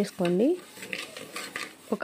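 Flax seeds being stirred while they dry-roast in a pan: a soft, continuous rattle and scrape of the small seeds against the pan and each other.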